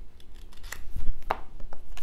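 Oracle cards being handled: a few short, crisp clicks and rubs of card stock, the sharpest a little past the middle.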